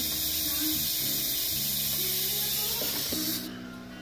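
A loud steady hiss that cuts off suddenly about three and a half seconds in, over background music with held notes.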